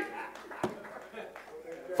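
A short lull in loud preaching: faint voices in the hall and a single sharp click about two-thirds of a second in.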